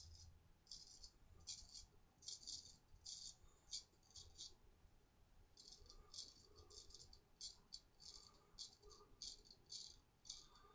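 A 6/8 round-point straight razor scraping through lathered stubble in short, faint strokes: a run of passes, a brief pause near the middle, then a quicker run of passes.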